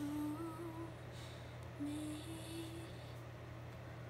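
A woman humming softly with her lips closed: two short phrases of held notes, each stepping up in pitch, with a brief pause between.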